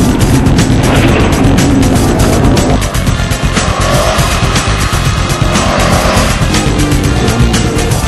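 2004 Subaru WRX STI's turbocharged flat-four engine working hard as the car slides on loose dirt, mixed under background music with a steady beat. About halfway through, a rising and falling pitch is heard.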